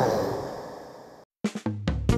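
A children's song fades out over about a second, then after a moment of silence a quick drum-kit fill of snare and kick hits begins the next song.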